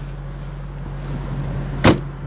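Rear deck lid (trunk lid) of a 2014 Ford Mustang Shelby GT500 shut once near the end, closing solidly with a single sharp slam, over a steady low hum.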